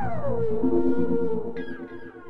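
Electronic track ending: the drum beat stops and a synthesizer tone glides down in pitch and holds over a low bass, with a second falling synth glide coming in near the end as the music begins to fade.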